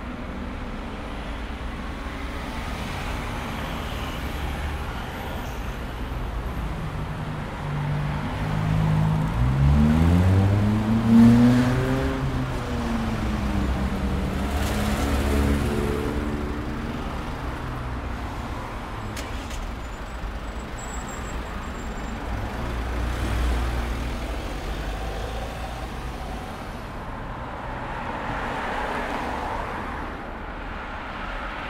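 Steady road-traffic rumble of car and truck engines. About nine seconds in, one vehicle's engine climbs in pitch, is loudest a couple of seconds later, then falls away, and a second, weaker engine sound follows soon after.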